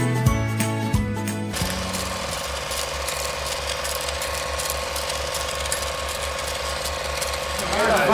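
Music cuts off about a second and a half in, giving way to an old film-projector sound effect: an even, rapid mechanical clatter over a steady hum. Voices begin just at the end.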